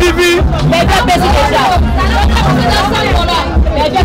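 Many people talking at once, a loud crowd babble, over background music with heavy deep bass.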